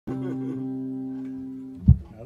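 Electric guitar chord struck once and left ringing, its notes sustaining and slowly fading; just before the end a short, loud, low thump cuts it off.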